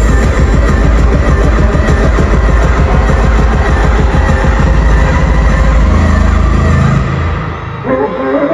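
Loud live K-pop concert music over arena speakers, with a heavy bass beat, recorded from within the crowd. About seven seconds in it drops away and thins.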